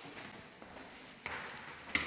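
Footsteps on stone stairs, with two sharper steps landing about a second in and again near the end.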